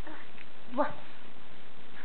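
A single short exclamation, "wow", in a person's voice, over a steady background hiss.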